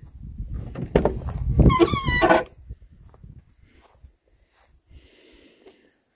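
Rumbling handling noise on a phone's microphone as the camera is moved, with a brief high-pitched squeal about two seconds in. After that it falls mostly quiet.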